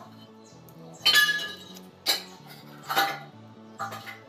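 Bangles on the wrists clinking in several sharp chinks about a second apart, the loudest about a second in with a brief metallic ring, over background music with a steady low bass line.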